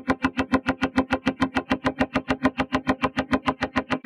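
A fast run of plucked notes on one pitch, about seven a second, each with a sharp attack. It runs through the TugSpect spectral (FFT) image processor, which cuts many small moving notches into the sound.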